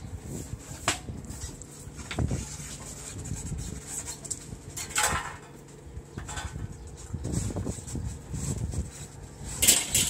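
A couch frame knocking and scraping as it is hauled up over the edge of a garage roof: scattered knocks, a longer scrape about halfway, and a louder one near the end.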